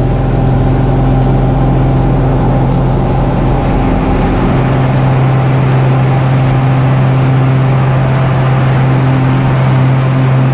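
Light propeller aeroplane's engine and propeller running steadily at takeoff power during the takeoff roll, heard from inside the cabin as a loud, even drone with a steady low hum.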